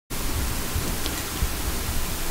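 Steady hiss of background noise with a low rumble underneath, no distinct events.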